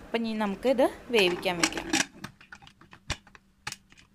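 A woman speaks briefly, then a pressure cooker's lid and weight are handled: a run of short metal clicks and knocks, the two loudest about half a second apart near the end, as the cooker is closed and its weight set on the vent.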